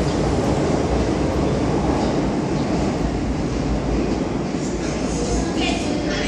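Rumble of an MTR M-Train metro train pulling away into the tunnel, a steady low rumble that slowly fades.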